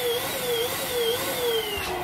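Electric balloon pump running as it inflates a latex balloon. A steady motor whine wavers up and down about twice a second and sinks slightly in pitch toward the end, with a click near the end.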